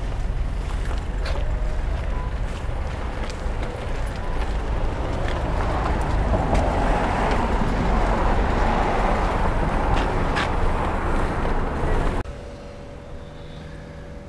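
Roadside traffic noise heard while walking: a vehicle on the road grows louder through the middle and stays close for several seconds, over a steady low rumble and scattered light ticks. Near the end it cuts abruptly to a much quieter room with a faint steady hum.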